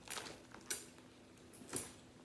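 A few faint, brief clinks and rustles of handling: a handbag with a metal chain strap and metal handles being moved and set down.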